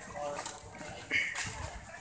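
Voices of people chatting in a street crowd, not close to the microphone, with a brief louder voice or sound about a second in.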